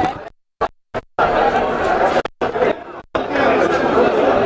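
Many people chattering at once in a large hall. The sound cuts out completely in several short gaps during the first second or so, and twice more briefly later on.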